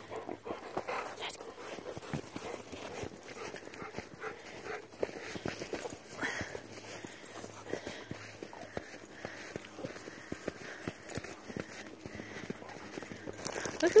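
Irregular crunching footsteps in snow, with a dog panting now and then.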